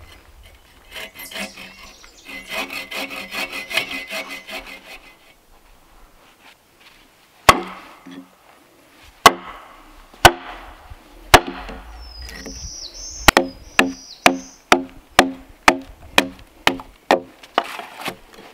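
Bow saw cutting into a peeled log with rapid back-and-forth strokes for a few seconds. After a short pause, an axe chops a notch into the log: single sharp strikes about a second apart, then quickening to about two strikes a second.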